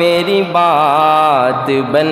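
A man singing a naat unaccompanied into a handheld microphone, drawing out a long wordless note that wavers and slides down, then starting a new note near the end.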